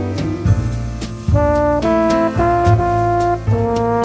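Big band jazz: a brass section led by trombones plays held chords that move to a new chord about every half-second, over bass and drums.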